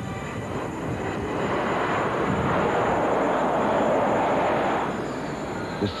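Jet aircraft flying past: a rushing engine noise swells over a couple of seconds, peaks, and fades away near the end.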